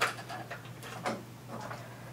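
Small plastic clicks and handling noise as a micro USB power cable is plugged into a palm-sized wireless HDMI sender: a sharp click at the start, another about a second in, and faint ticks between.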